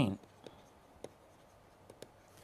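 Pen writing: a few faint, isolated taps and scratches.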